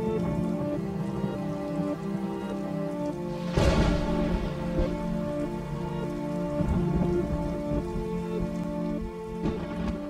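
Dark ambient music of held, sustained notes over a rain sound effect, with a thunderclap about three and a half seconds in.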